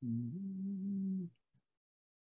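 A man humming one held note lasting just over a second, stepping up slightly in pitch shortly after it starts, then stopping.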